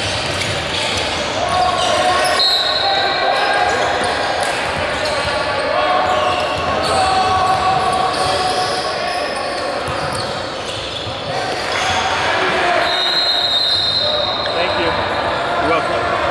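Basketball gym sound: indistinct chatter from players, benches and spectators echoing in a large hall, with a basketball bouncing on the hardwood floor. A thin high tone sounds twice, about two seconds in and again near the end.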